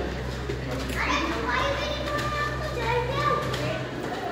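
Children's voices chattering and calling out, over a steady low hum.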